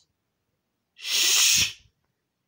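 A single sharp, breathy burst of air from a person, about a second in, lasting under a second and stopping abruptly.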